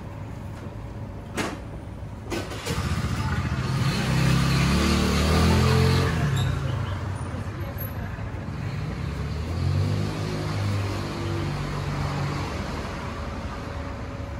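A motor vehicle passing close by: its engine rumble swells in about three seconds in, peaks mid-way, eases, and comes up again for a few seconds later on. Two sharp clicks come just before it.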